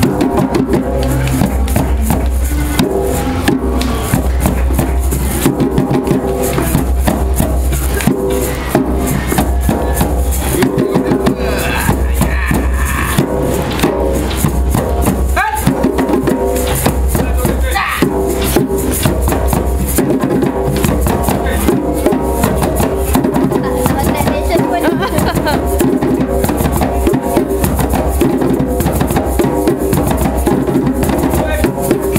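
Several djembes played by hand together in a continuous group rhythm, with many overlapping slaps and tones.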